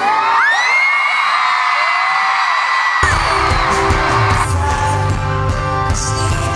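A concert audience screaming and shrieking, with long high-pitched held screams, for about three seconds. It cuts off suddenly and a live pop-rock band takes over, playing with bass and drums under the crowd noise.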